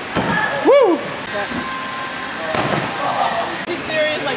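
A person's short exclamation that rises then falls in pitch, about a second in, is the loudest sound. A sharp thud follows about two and a half seconds in.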